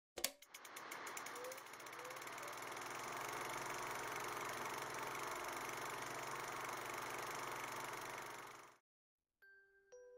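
Film projector sound effect: a click, then fast clicking that settles into a steady running whir, which cuts off suddenly about a second before the end. Bell-like chime notes begin just before the end.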